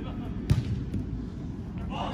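A soccer ball kicked once, a single sharp strike about half a second in that rings briefly in the big indoor hall, over a steady low rumble of the hall.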